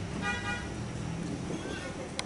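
A horn toots once, briefly, about a quarter second in, a steady pitched note lasting about half a second, over a low steady hum.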